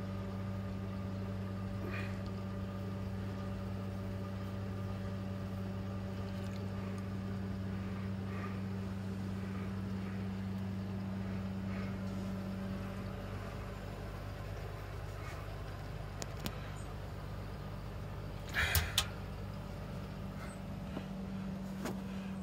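Steady electric hum of pond filtration equipment running, with the homemade Tempest moving-bed filter in operation. The hum's upper tone fades a little past halfway, and a short brief noise comes near the end.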